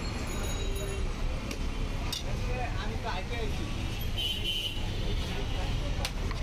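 Busy roadside ambience: a steady rumble of traffic with the chatter of voices in the background, and a few light clinks of steel utensils on the steel tray.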